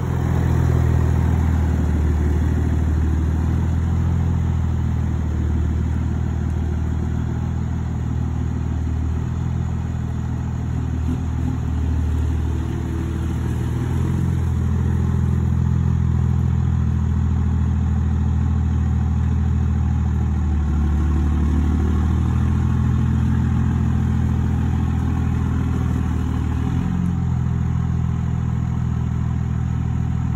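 A vehicle engine running steadily, a loud low drone whose pitch shifts slightly now and then.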